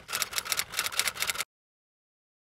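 Typing sound effect: a rapid run of keystroke clicks that stops abruptly about one and a half seconds in, followed by dead silence.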